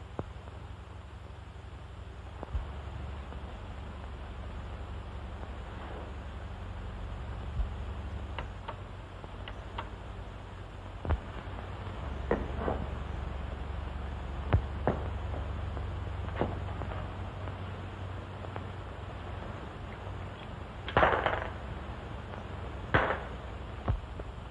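Steady low hum and hiss of an old film soundtrack, with scattered faint clicks and knocks. A brief, louder noisy sound comes about three seconds before the end.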